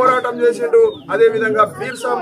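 A man speaking continuously to a gathering, with a brief pause about a second in.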